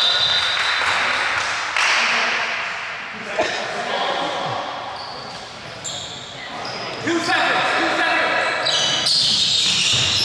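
Basketball game in a gym: a basketball bouncing on the hardwood a few times, sneakers squeaking sharply on the floor, and players calling out to each other.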